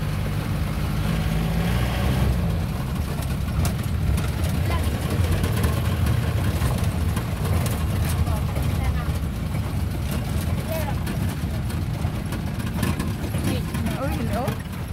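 Jeep engine running and tyre noise on a bumpy dirt road, heard from inside the cabin, with scattered rattles and knocks as the vehicle jolts along.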